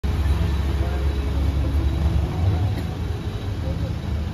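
Low steady rumble of an idling car engine, with faint voices of men talking under it.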